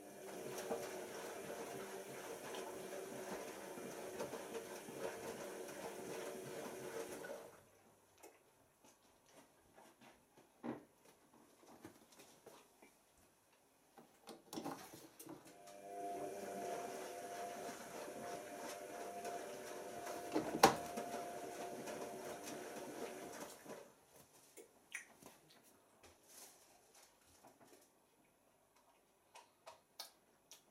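Tricity Bendix AW1053 washing machine filling: water runs in through the inlet valve and detergent drawer in two spells of about seven and eight seconds, each with a steady whine in it. This is the machine drawing water through the pre-wash compartment. Between the spells, and once during the second, there are scattered clicks and knocks.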